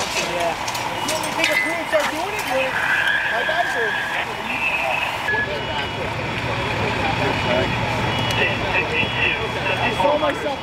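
Fireground noise at a house fire: fire engine motors running with indistinct voices and radio chatter. A steady electronic tone sounds for about a second and a half about three seconds in, and a low engine hum grows louder in the second half.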